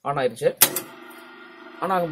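Starter panel for a three-phase pump motor: one sharp mechanical clack, typical of the contactor pulling in, then a steady electrical hum.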